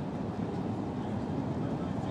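Steady, even background noise of an outdoor racecourse, with no distinct sound standing out.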